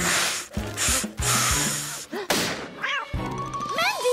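A paper bag is blown up in several long puffs and then burst with a sharp pop, used as a pretend firework banger. Background music runs underneath.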